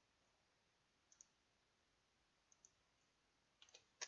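Near silence broken by a few faint computer mouse clicks, in pairs about a second and two and a half seconds in and a short cluster near the end.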